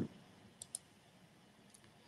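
Two faint computer clicks in quick succession a little over half a second in, advancing the presentation to the next slide.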